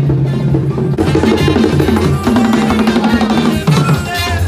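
A live band playing loud, upbeat music with prominent drums and percussion; a new section starts about a second in.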